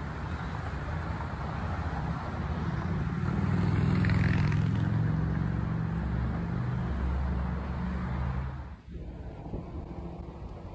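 Hand-held phone recording while inline skating on a paved path: wind rumbling unevenly on the microphone over a steady rolling noise of skate wheels and roadway traffic. The sound drops suddenly about a second before the end.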